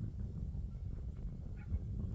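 Wind rumbling on the microphone, with a dog's faint panting.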